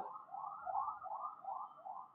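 Faint warbling alarm tone whose pitch rises and falls about four times a second.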